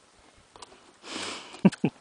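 A young horse blowing out through its nostrils: a breathy rush about a second in, then two short, sharp bursts close together, the loudest sounds.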